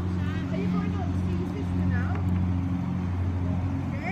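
A steady, low, engine-like hum drones without change, with faint voices in the background.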